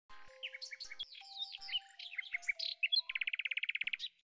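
Birdsong: a quick run of varied chirps and whistled notes, ending in about a second of fast, even trill.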